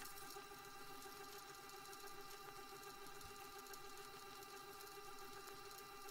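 Near silence: a faint steady hum with a few held tones and light hiss, unchanging throughout.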